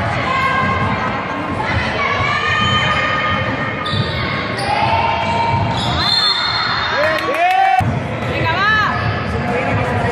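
Basketball game in a large gym: girls' voices calling out across the court, a basketball bouncing on the wooden floor, and several short squeaks of sneakers on the court in the second half.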